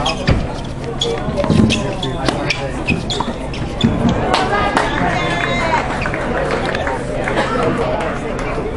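Tennis balls struck by rackets and bouncing on a hard court during a doubles rally: a string of sharp hits, with voices talking in the background.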